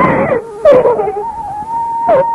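A person's voice crying out twice, each cry falling in pitch. A long held note from the film's music comes in about a second in.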